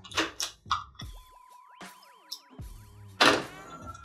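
An electronic sound effect or musical sting: a steady high tone with a fast wobbling warble over it for about two seconds, set between a couple of short knocks at the start and a loud hit near the end.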